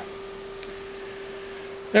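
A steady, even hum with a faint hiss behind it: the room tone of a small workshop.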